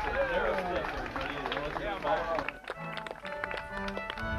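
Voices talking close by for the first couple of seconds, then a short break and organ music begins, playing held chords.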